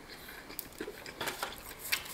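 A mouthful of crispy breaded fried chicken being chewed: scattered small crunches and clicks of the crust, a few sharper ones about half a second and a second in and near the end.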